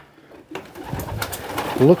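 Racing pigeons stirring in their loft: a rustling noise starts about half a second in.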